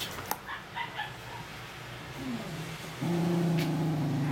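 A small spitz-type dog gives a few short high whines, then about three seconds in starts a long, steady low growl while guarding the piece of fur it holds under its chin.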